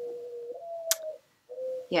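A woman humming in thought with her mouth closed: a steady low "hmm", then a slightly higher held note, then after a short pause another brief low hum. A single sharp click comes about a second in.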